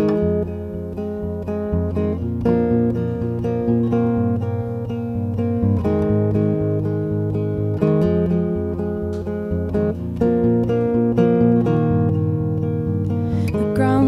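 Two acoustic guitars playing the instrumental intro of a folk song, chords and plucked notes ringing together.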